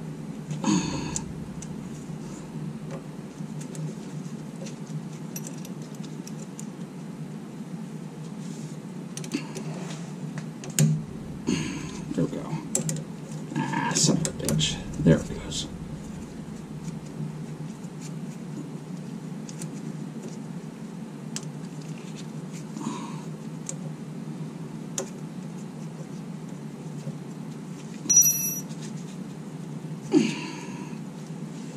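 Small metal clicks and rattles of steel cable clamps and a screw being worked by gloved hands against the frame rail, as the screw is forced through clamp holes that don't line up. The rattling is busiest in the middle, with a short ringing metal clink near the end, over a steady low hum.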